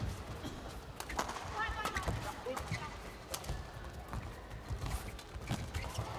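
Badminton rally: a run of sharp racket strikes on the shuttlecock, several times over, mixed with players' footwork on the court over a low arena background.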